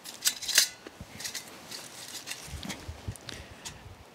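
Light clicks and clinks of a stainless steel camp stove and pot being handled, with a few sharp clicks in the first second, then softer handling noise and rustling.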